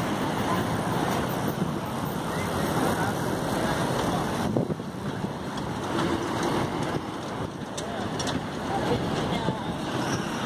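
Steady rushing wind noise on the microphone as it moves along the path, with faint voices of people passing.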